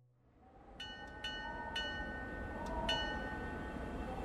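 Streetcar bell dinging about five times in the first three seconds over a low rumble of the car on its rails, with a faint wavering whine; the sound fades in from silence.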